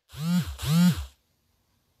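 A man's short two-part laugh, each part rising then falling in pitch, ending about a second in.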